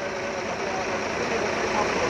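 Steady roadside traffic and engine noise, an engine running nearby, with muffled talk in the background.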